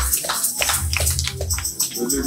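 Church band music: deep bass notes under a regular beat of sharp percussion strikes.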